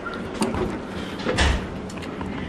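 A refrigerator door being pulled open: a short click about half a second in, then a heavier thump about a second and a half in as the door's seal lets go and the door swings open.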